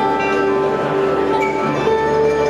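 Live band playing a slow instrumental intro: a mandolin picking over held, sustained notes that move to new pitches about halfway through and again near the end.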